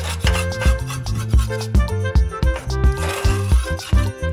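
Metal putty knife scraping loose paint off a painted cabinet surface, in short rasping strokes with a longer scrape about three seconds in, over background music with a steady beat.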